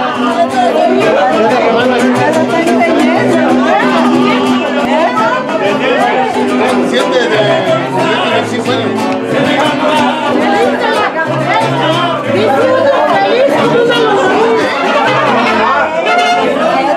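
Live mariachi band playing, a guitarrón's bass notes stepping underneath held tones, with many guests chattering and talking over the music.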